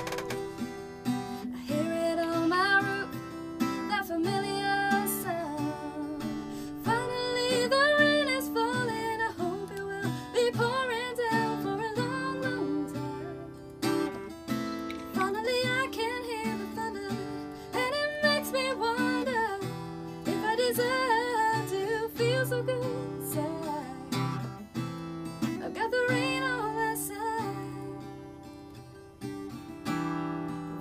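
A woman singing a country-pop song over her own strummed acoustic guitar. Her voice drops out near the end, leaving the guitar playing alone.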